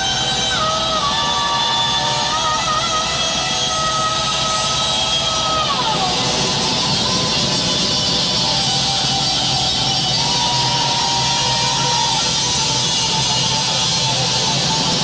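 Live heavy metal band playing: electric guitar, bass guitar and drum kit at a steady loud level. Long held notes slide between pitches over the band.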